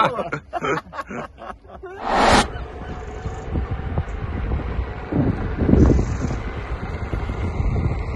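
Wind rushing over the microphone of a camera carried on an electric unicycle moving along an asphalt path, mixed with tyre noise, with stronger rumbling gusts around five to six seconds in. A short loud burst of noise comes about two seconds in.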